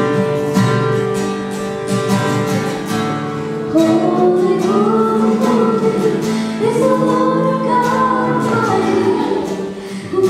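Live acoustic guitar strummed, with singing coming in about four seconds in and carrying the tune over the guitar.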